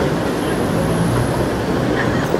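City street ambience: a steady low rumble of passing traffic under the voices of people nearby.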